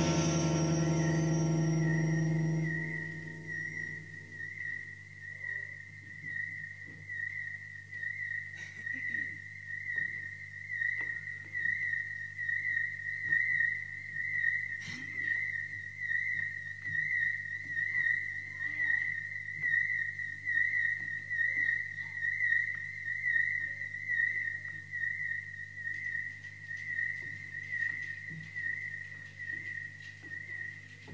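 A single high, steady electronic tone with a regular wobble several times a second, held for the whole stretch once a music chord has died away in the first few seconds. A faint low hum lies beneath it, with an occasional faint knock.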